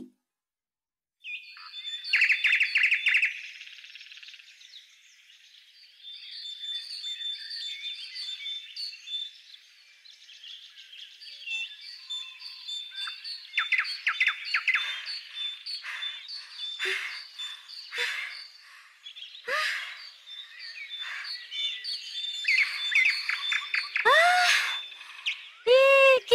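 Songbirds of a morning chorus chirping and trilling, many short high calls overlapping with a steadily repeated high note; the birds come in about a second in. Near the end, louder calls with sweeping pitch.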